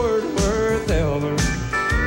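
Live country band playing an instrumental ending, with no singing. A guitar slides up into long held notes over drum hits about twice a second.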